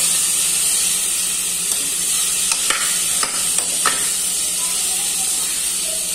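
Diced calabresa sausage sizzling steadily as it fries in a metal pot, with a spoon stirring and clicking against the pot a few times in the middle.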